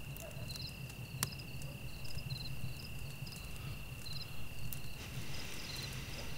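Crickets chirping quietly: a steady high trill with short groups of three or four chirps repeating above it. A single sharp click comes about a second in.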